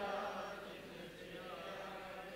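Faint chanting voices over low room tone, with no clear words.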